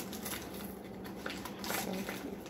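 Faint rustling and small clicks of hands working at opening a package, over a steady low hum.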